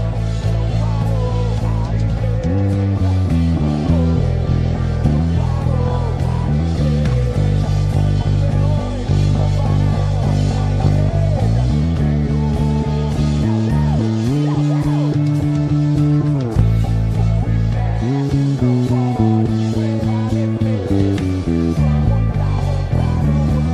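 Five-string electric bass played fingerstyle, a bass line of held low notes stepping from pitch to pitch over a full band backing track with a lead vocal.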